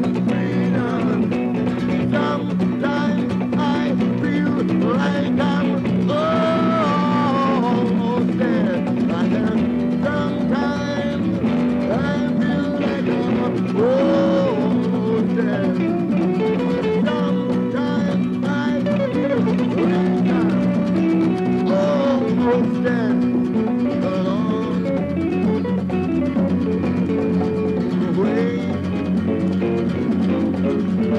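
Live acoustic guitars playing an instrumental passage: one strummed steadily on a sustained low chord, with a melody above it that slides and bends in pitch.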